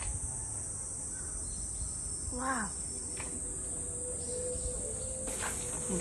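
A steady, high-pitched insect drone that holds unchanged throughout.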